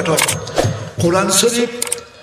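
A man preaching into a microphone, with a brief pause about a second in.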